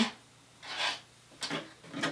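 Hands rubbing against a crocheted yarn piece as it is handled with a crochet hook: a soft rub a little past half a second in, and a shorter one a little later.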